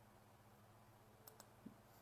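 Near silence with two faint, short clicks a little past halfway, followed shortly by a soft low tap.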